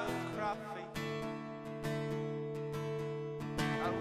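Acoustic guitar strumming chords in a short instrumental gap between sung lines, the chords ringing on between strokes; the singing comes back in near the end.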